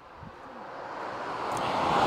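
A road vehicle approaching, its rushing noise growing steadily louder.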